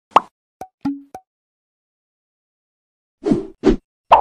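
Cartoon pop and click sound effects: one sharp pop at the start, then three quick little clicks, two of them ending in a brief pitched blip, within the first second or so. Near the end come two fuller pops in quick succession.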